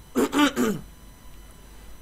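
A man's brief vocal sound, with a pitch that drops at its end, in the first second.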